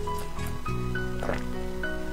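Background music with held notes, and a few short soft noisy swishes over it.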